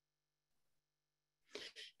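Near silence, then near the end a short two-part intake of breath by a person just before speaking.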